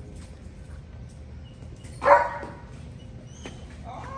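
A dog barks once, a single short bark about halfway through.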